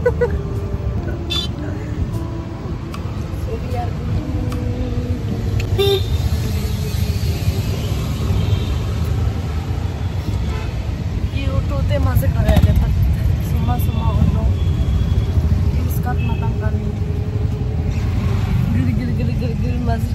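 Auto-rickshaw in motion, heard from inside its open passenger cabin: a steady low engine and road rumble, with a few short horn toots from traffic around the middle.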